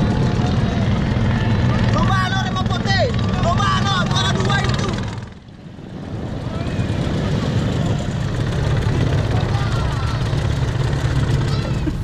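A motorboat engine runs with a steady low drone over wind and water noise. The sound drops out briefly a little past halfway, then the engine drone carries on.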